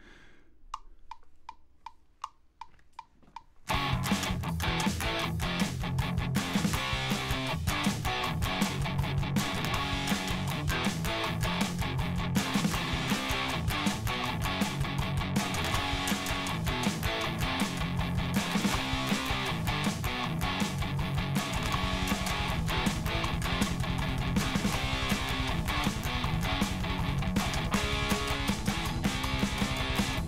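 A metronome count-in of quick, evenly spaced clicks, then electric guitar played through the Bias FX 2 amp-simulator app and recorded into GarageBand, over a backing track with drums. The guitar and backing start together after the count-in and keep going to the end.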